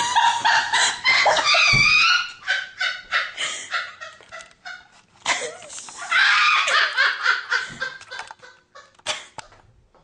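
A woman laughing loudly in two long fits, the second starting about five seconds in, then tailing off into short breathy bursts near the end.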